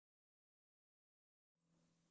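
Silence: no sound at all, only a faint noise floor in the last half second.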